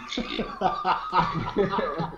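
Several men laughing and chuckling in short repeated bursts.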